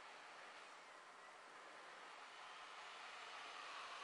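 Near silence: a faint, steady hiss of room tone.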